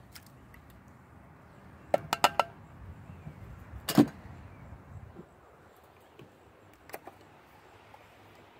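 A metal food can knocked against the rim of a cast iron dutch oven while it is emptied: four quick ringing taps about two seconds in, then one louder, deeper knock about four seconds in, with a single lighter click near the end.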